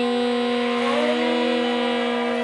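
A woman's voice holding one long chanted mantra syllable at a steady pitch, over soft background music.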